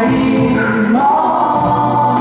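Two women singing a duet into microphones over musical accompaniment; about a second in, their voices step up to a long held note.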